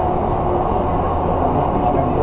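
Ice resurfacer running on the rink: a steady, loud, low machine rumble echoing through the arena, with faint voices in the background.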